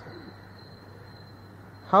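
Pause in a spoken talk: faint steady hiss of the recording with a low hum and a thin high whine underneath. The voice comes back in near the end.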